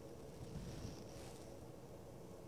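Faint, steady background noise with a low rumble and no distinct sound event.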